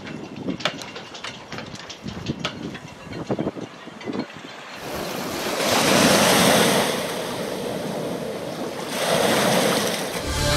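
Scattered sharp clicks and knocks over faint water sounds for about the first half, then lake waves breaking and washing up over a sandy shore with wind. The wash swells twice, strongest about six seconds in and again near the end; this is high water running up the beach.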